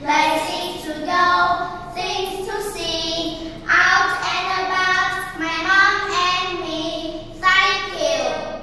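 Two young girls singing a children's English song together, in short phrases of held notes with brief breaks between them.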